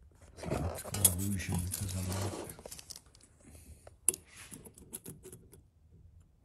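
A voice speaks briefly at the start. Then come scattered light metallic clicks and one sharp tap about four seconds in, as a steel tape measure is handled and set against the chassis frame.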